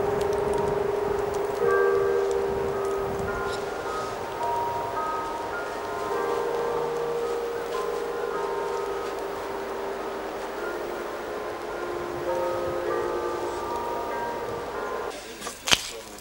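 Soundtrack music of slow, long held notes that shift pitch every second or two, with a sharp click near the end.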